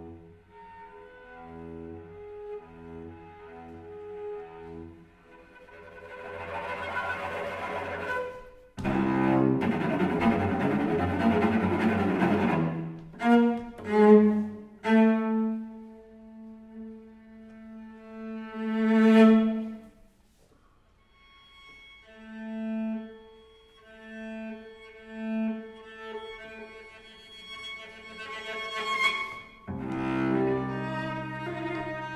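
Solo cello playing a contemporary piece: soft repeated notes, then a swell into a loud, rough, noisy passage, a few sharp accented strokes, and a long held note that swells up. After a brief pause about twenty seconds in, pulsing repeated notes build again toward the end.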